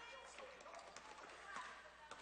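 Faint sounds of a basketball game in play on a hardwood gym floor: scattered footfalls and small taps from the players and ball, over the hum of a large arena.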